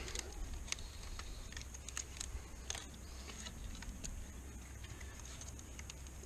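Fence brace wire being twisted tight with a wooden stick: faint, irregular clicks and scrapes as the wire strands wind around each other.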